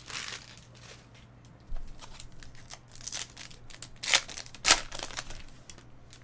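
Foil trading-card pack wrapper crinkling as it is opened and the cards inside are handled, in a run of short rustling bursts, the loudest about four to five seconds in.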